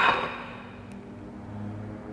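A clash of a wooden spear shaft against a plastic chair dies away in the first half second, leaving a quiet room with a faint steady low hum and one small click about a second in.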